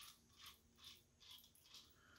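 Near silence with about five faint small clicks, roughly two a second, from a half-inch steel yoke bolt and its fitting being turned and handled in the hands.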